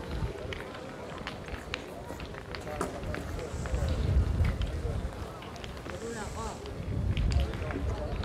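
Indistinct voices of people around a pétanque court, with a low rumble of wind on the microphone that swells in the middle and near the end, and scattered sharp clicks.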